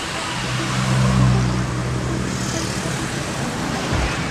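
A car driving past: a low engine hum over road noise, loudest about a second in.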